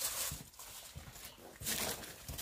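Footsteps and rustling in dry straw and grass, in a few uneven bursts, loudest near the start and again late on.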